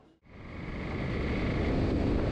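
Steady outdoor street noise with wind on the microphone, fading up from a brief silence at the start.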